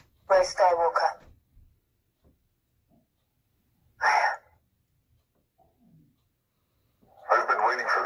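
Lightsaber hilt's LGT sound board playing short voice clips through its small built-in speaker as the sound fonts are cycled: one about a second long near the start and a brief one about four seconds in, with a thin, telephone-like tone.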